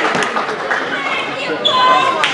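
Crowd chatter in a gymnasium with a basketball bouncing on the hardwood floor. Near the end comes a short, held high-pitched sound.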